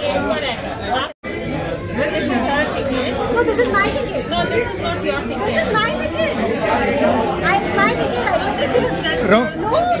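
Many people talking at once, overlapping chatter of several voices. The sound cuts out completely for a moment about a second in.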